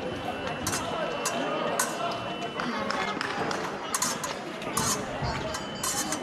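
Épée fencing bout on a metal piste: a scattered series of short, sharp clicks and squeaks from the fencers' footwork and blades, over the chatter of a large sports hall.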